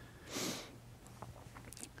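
A man draws one short audible breath about half a second in, then a few faint mouth clicks over low, steady room hum.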